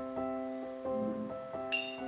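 Soft background piano music with steady, gently struck notes. About three-quarters of the way through comes a single sharp clink with a brief high ring.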